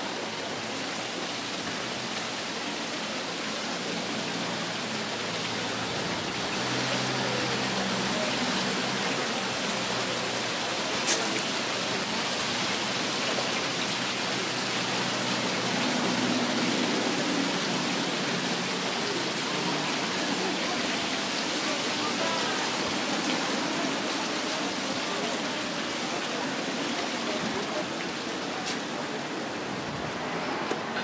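Fountain jets splashing into a stone basin: a steady rush of water, loudest through the middle stretch, with one sharp click about eleven seconds in.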